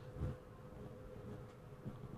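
Faint steady buzzing hum with a few soft low knocks.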